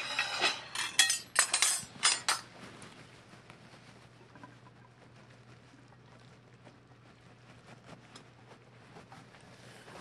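Serving utensils clattering against a mixing bowl as linguine is lifted out onto a platter. There is a quick run of knocks in the first two seconds or so, then only faint, scattered ticks.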